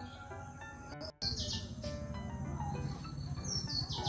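Soft background music. After a short break about a second in, birds chirp over it in groups of quick falling high calls, once early and again near the end.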